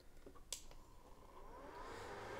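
Small electric fan of a 3D-printed air scrubber being switched on at its speed-control knob: a click about half a second in, then a faint whine rising in pitch as the fan spins up.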